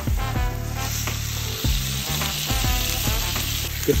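Smash burger patties and raw bacon strips sizzling steadily on a hot flat-top griddle.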